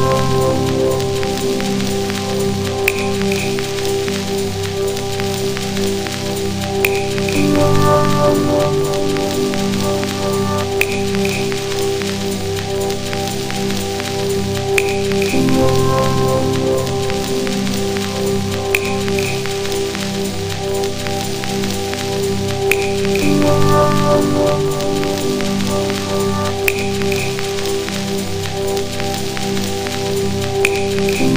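Dub techno track: sustained chords over a dense, hissing crackle texture, with a short high double blip about every four seconds.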